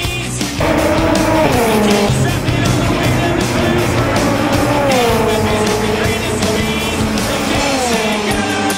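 Formula Two race car engine at high revs, its note falling in pitch about one and a half seconds in, again around five seconds, and near the end, mixed with loud rock music with a steady drum beat.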